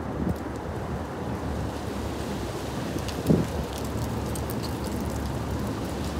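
Steady low outdoor street ambience with wind noise on the microphone, and one brief short sound about three seconds in.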